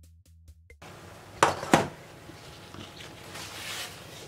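Background music with an electronic beat stops under a second in. Then come two sharp knocks about half a second apart and the papery rustle of a thin phyllo pastry sheet being lifted.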